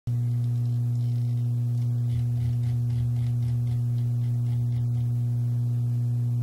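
Steady low electrical hum with a stack of overtones, a constant buzz laid over the whole recording.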